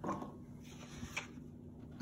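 Quiet room tone with a single faint click about a second in.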